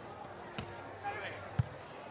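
A beach volleyball being struck twice in a rally: a sharp smack about half a second in, then a louder, duller thump about a second and a half in, over faint crowd murmur.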